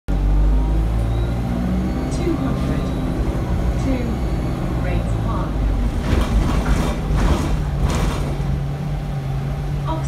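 Interior of a single-deck diesel bus on the move: the engine runs steadily with a low note that shifts in pitch, and the body and fittings rattle in a cluster a few seconds before the end.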